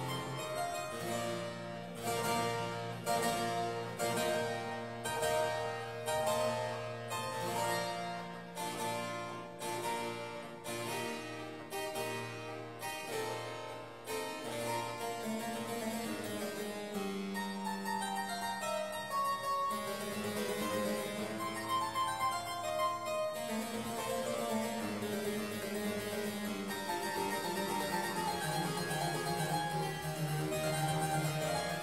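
A Walter Chinaglia harpsichord playing baroque music: a steady pulse of plucked chords over held bass notes in the first half, then running scale-like passages.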